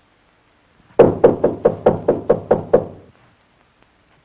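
Rapid, hard knocking on a door: about nine blows in under two seconds, starting about a second in.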